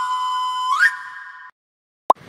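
Whistle-like electronic tone of a news channel's audio logo: one pitched note that slides down, holds, then sweeps sharply up a little under a second in, fading and cutting off at about one and a half seconds.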